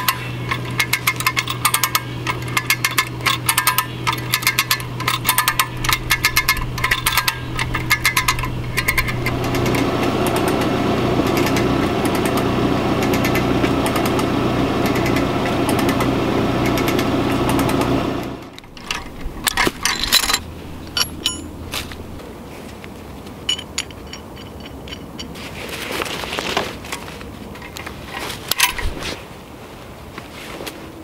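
Ratchet of a hand winch (come-along) clicking rapidly as its lever is pumped, over a steady low hum. It is followed by a louder continuous rattle lasting several seconds. After an abrupt break, quieter scattered clinks of a metal shackle and straps being handled.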